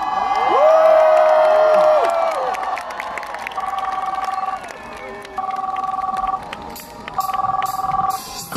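A two-tone telephone-style ringtone played through the concert PA as part of the song's arrangement, ringing in bursts of about a second with short gaps, four times. Crowd cheering and a long held shout sound under the first couple of rings.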